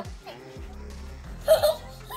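Background music, with a small child's short giggle about a second and a half in.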